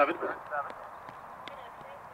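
Commentator's voice ending a call ("…clear at seven"), then steady outdoor background noise with a few faint, irregular ticks.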